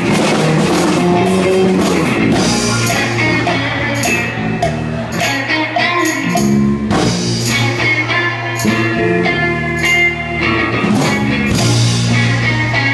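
Live funk band playing a groove, with a held bass line, guitar and drum kit hits.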